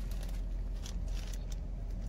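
A few faint crinkles of a plastic biohazard specimen bag being picked up and handled, over a steady low hum in a car's cabin.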